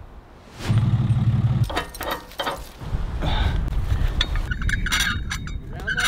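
A vehicle engine running as a low rumble, with a short steady hum about a second in and scattered metallic clinks and knocks.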